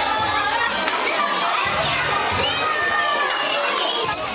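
Many young children shouting and chattering at once in a hard-floored room, with high excited calls standing out over the hubbub.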